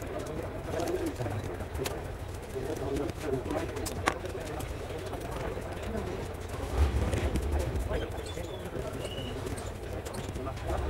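Light clicks and a soft thump about seven seconds in as laptop parts are handled and the small daughterboard is lifted out during disassembly, with a bird cooing in the background.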